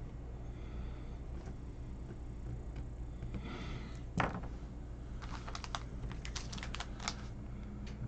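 Computer keyboard typing: one sharp key click about four seconds in, then a quick run of about ten clicks, over a faint steady background hum.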